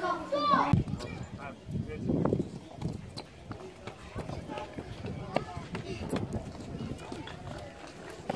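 People talking on and around a tennis court, with the short sharp pops of a tennis ball being struck during a rally.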